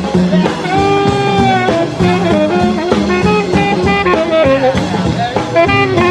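Rock and roll band playing an instrumental break with no singing.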